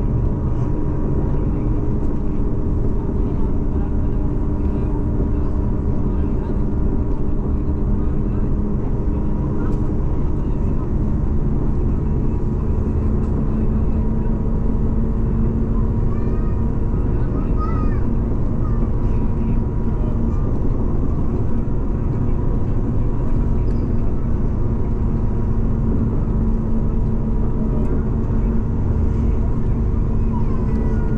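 Steady engine and road noise of a vehicle driving along at an even speed, heard from inside the cab: a continuous low rumble with a constant engine drone.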